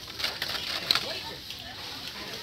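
Carded plastic blister packs of die-cast toy cars clicking and rustling as a hand rummages through a pile of them, with one sharper click just before a second in, over a murmur of voices from a crowded shop.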